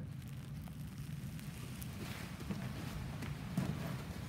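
A steady low room hum under faint rustling, with a few light ticks or knocks.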